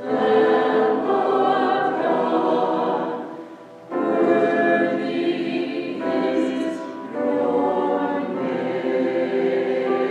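Mixed choir of men's and women's voices singing in phrases, with a short break for breath about four seconds in.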